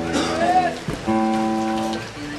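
Live band holding two sustained chords, broken about halfway by a short burst of hiss and a brief rising-then-falling glide.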